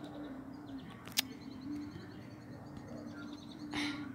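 Faint bird calls: a low, drawn-out tone that breaks off and resumes, and faint high chirps, with a single sharp click about a second in.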